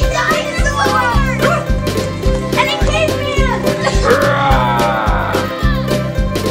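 Background music with a steady beat of about two hits a second. Children's voices yell over it several times, their pitch sweeping up and down.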